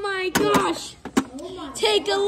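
A boy's voice making wordless, drawn-out vocal sounds that bend up and down in pitch, with a few sharp plastic clicks from action figures being handled.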